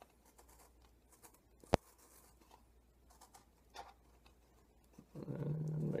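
Faint handling of a sealed tobacco can as its seal is broken open, with one sharp click a little under two seconds in and a few softer clicks after.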